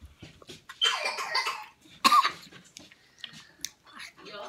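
A person coughing from the heat of spicy Takis chips, with a longer rough cough about a second in and a sharp short one about two seconds in.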